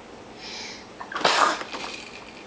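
A baby sneezing once, a short sharp burst about a second in.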